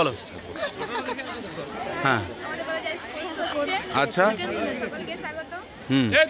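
Several voices chattering and talking over one another, as a group of young women gathers close by.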